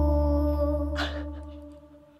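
A live band's performance ends on one long, steady held note over a low bass drone. Both fade away over about two seconds.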